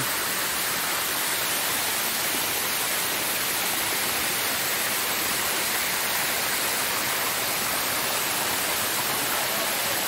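A waterfall pouring down a rock face: a steady, even rush of falling water.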